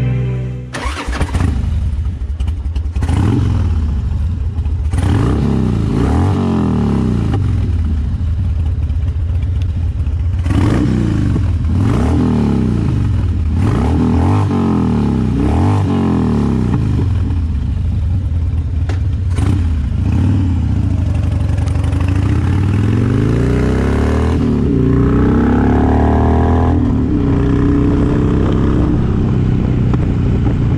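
Harley-Davidson motorcycle's V-twin engine under way on the road, its pitch rising and dropping again and again as it pulls through the gears, then running more steadily in the second half.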